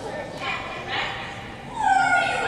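A person's voice making short pitched vocal sounds, with a loud rising cry near the end.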